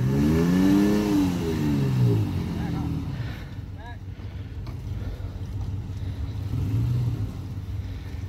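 Pickup truck engine revving up hard and easing off during a tow-strap pull to free a truck stuck in mud, then running lower with a short second rise of revs near the end.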